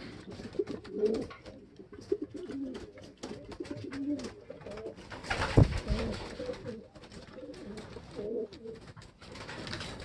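Racing pigeons cooing repeatedly in a loft, with scattered small clicks and one loud knock about halfway through.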